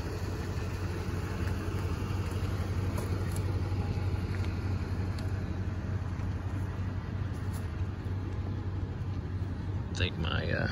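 2017 Toyota Tundra's V8 idling with a steady low hum; the owner calls it quiet.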